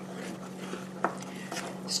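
Wooden spoon stirring a boiling milk-and-sugar fudge mixture in a metal saucepan: a faint scraping, with a light knock of the spoon against the pan about a second in.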